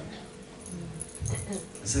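Pause in a man's speech through a handheld microphone: quiet room noise with a few faint light clinks and a brief low voice sound. Speech resumes with a single word near the end.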